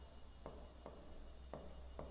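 A pen writing on an interactive display screen: faint strokes and a few sharp taps as the tip lands, over a steady low hum.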